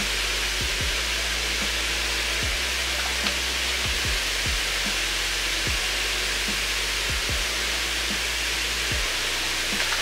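Hot tub jets running: a steady rushing hiss of churning, aerated water.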